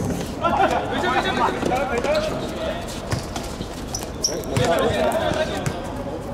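Men's voices calling out during a small-sided football game, with a few sharp thuds of the ball being kicked on a hard court.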